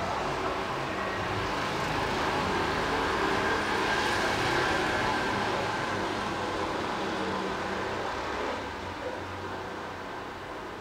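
A vehicle passing outside: a broad noise that swells to its loudest about halfway through, then fades away.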